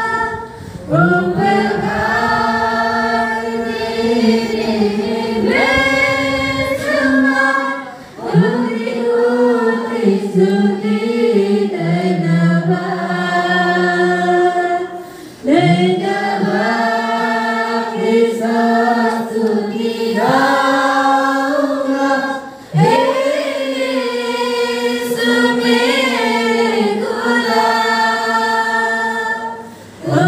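A church congregation singing a Hindi Christian worship song together, with no audible instrumental accompaniment. The voices hold long notes in phrases of about seven to eight seconds, with a short breath between phrases.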